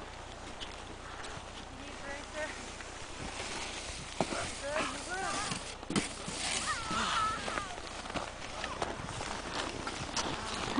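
Footsteps in snow as a person walks up a slope, with high children's voices calling out in the distance a few seconds in.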